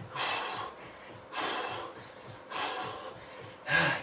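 A man breathing hard, out of breath from high-intensity sprint exercise: three heavy, rasping breaths about a second apart.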